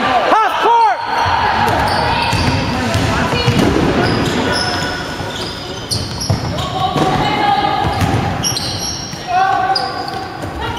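Basketball game in an echoing sports hall: the ball bouncing on the wooden court amid running footsteps and short high squeaks of sneakers on the floor.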